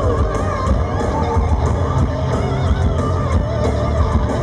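A rock band playing live and loud, with electric guitar over bass and drums.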